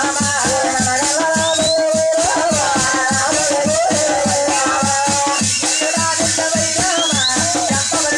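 Folk music with a wavering melody over a quick, steady beat. The bright, constant jingle of small hand cymbals and ankle bells runs through it.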